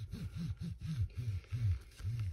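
Bone folder rubbed back and forth over cover paper on a canvas, a low rubbing with about four strokes a second.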